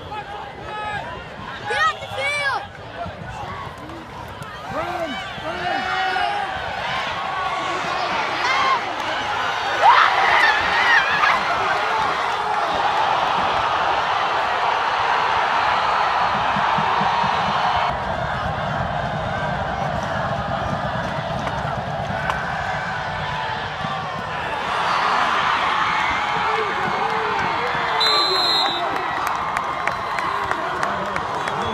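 Football stadium crowd cheering for a long run to the end zone. Scattered shouts swell about five seconds in into loud, sustained cheering, and a short shrill tone sounds near the end.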